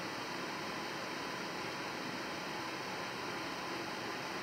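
Steady, even hiss of background room tone with no distinct events.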